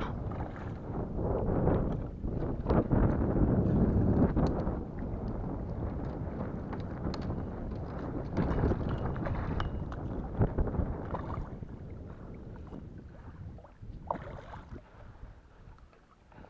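Wind rumbling on the microphone, with water splashing and scattered sharp clicks as a hooked peacock bass thrashes at the surface beside a kayak. The noise fades over the last few seconds.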